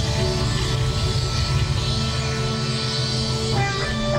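A live rock band playing a slow piece in long held notes, with the notes changing near the end.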